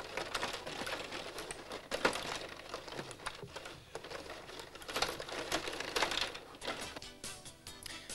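Irregular clicking and clattering of a table hockey game in play: the plastic rods and players rattling and knocking, with the puck striking the plastic rink. Music plays underneath.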